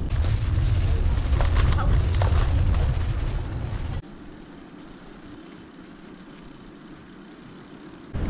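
Wind buffeting the microphone of a camera carried on a moving bicycle, a loud low rumble that cuts off abruptly about halfway through. A much quieter, steady rushing noise is left after it.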